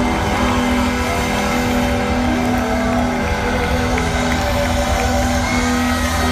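Live rock band playing loud through a festival PA, led by a distorted electric guitar solo with bending notes over a long held low note, heard from within the crowd.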